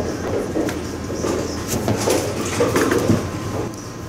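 Bowling alley din: a steady rumble of balls rolling on the lanes with scattered sharp knocks of pins and balls, over a low hum.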